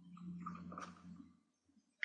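Near silence: a faint low steady hum, with a faint click of a computer mouse a little under a second in, then the sound cuts out.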